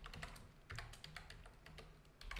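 Faint computer keyboard typing: a handful of quiet keystrokes at an uneven pace.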